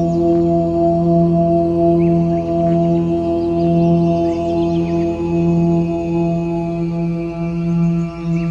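OM meditation music tuned to 432 Hz: a continuous chanted OM drone held on one low note with its overtones, slowly swelling and fading.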